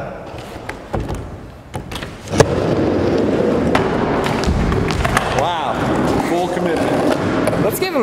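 Skateboard wheels on a wooden mini ramp: a few light knocks, one sharp loud clack about two and a half seconds in, then steady rolling rumble. The board is a homemade folding deck, cut in half and joined with door hinges.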